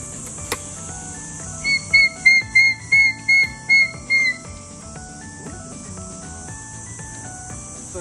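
A man's shrill, whistle-like cry: eight short high notes repeated evenly, about three a second, for a couple of seconds. Background music plays throughout.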